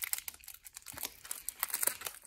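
Crinkling of a foil Pokémon booster pack wrapper being handled, a dense run of irregular crackles.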